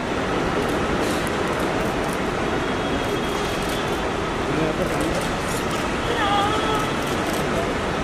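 Steady outdoor traffic and crowd noise: an even hum of vehicles with faint, indistinct voices, one briefly rising out of it about six seconds in.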